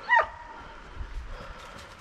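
A Halden hound gives a single short, high yelp that falls in pitch, followed by faint rustling in the undergrowth.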